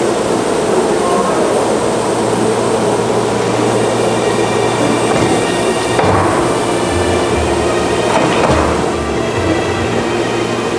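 Steady workshop machinery hum under background music, with a couple of wooden knocks about six and eight and a half seconds in as a wood slab is set down on a slatted wooden cart.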